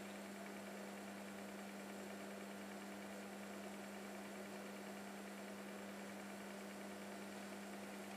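A faint, steady low hum holding one unchanging pitch, over a light hiss, with nothing else happening.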